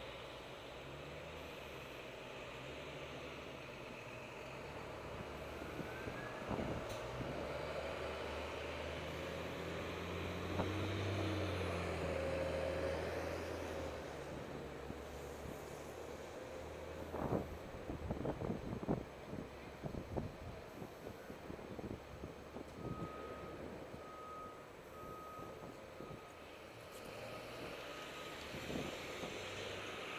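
City traffic at an intersection: a steady low hum of vehicle engines, swelling for a few seconds about a third of the way in. Past the middle come a run of sharp knocks, then three short electronic beeps at one pitch.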